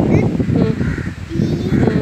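A child's voice reading aloud, with a bird giving two harsh calls in the background, one about a second in and one near the end.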